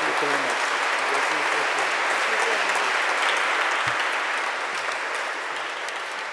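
Audience applauding steadily, easing off slightly near the end, with a few voices underneath.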